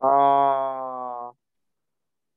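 A man's voice holding one long, unwavering vowel, a drawn-out hesitation sound, for just over a second, loudest at the start and cut off suddenly.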